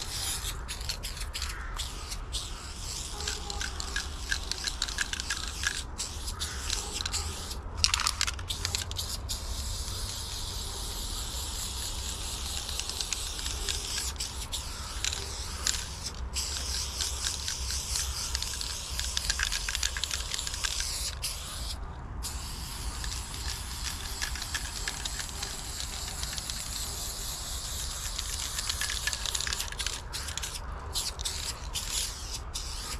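Aerosol spray paint can hissing in long and short bursts, broken by brief pauses, as paint is sprayed onto a wall. There is a single sharp click about eight seconds in.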